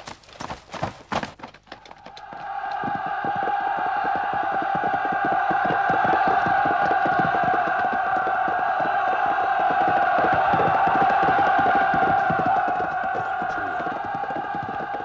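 A great mass of voices shouting together in one steady roar, with rapid drumming or trampling beneath, swelling in over the first two or three seconds: the cry of a large army drawing near. A few sharp knocks come first.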